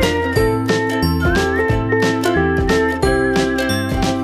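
Background music: an upbeat track with a steady beat, a bass line and a high lead melody that slides between notes.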